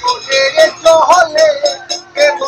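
A man singing a sad Bengali song in a wavering, sustained voice, accompanied by plucked strokes on a long-necked, skin-covered lute.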